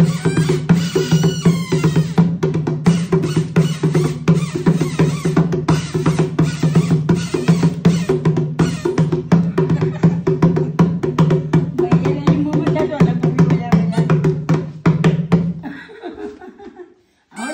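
Dholak played by hand in a fast, steady rhythm of dense strokes over a booming low tone, breaking off just before the end.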